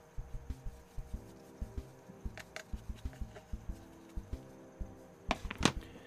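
Paintbrush dabbing and mixing acrylic paint on a plastic palette: a string of soft, low taps, two or three a second. Two sharper, louder strokes come near the end.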